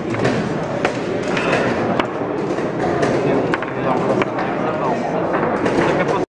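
Indistinct voices talking in the background, with a few sharp clicks about one, two and three and a half seconds in.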